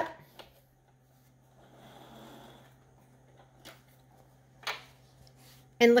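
Quiet handling at a sewing machine: soft rustling of cotton fabric being drawn out from under the presser foot, with a couple of small clicks or snips.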